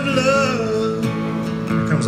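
Live acoustic country song: a man's voice holds a sung note with a slight waver that ends about a second in, over a strummed acoustic guitar that keeps playing.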